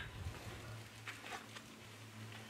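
Faint rustling and shuffling of a person rolling over on a foam exercise mat, over a steady low hum.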